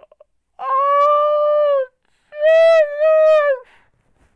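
A man's voice letting out two long, high, held cries, each over a second, the second with a short break partway and both falling off at the end: an overwhelmed, excited wail of disbelief.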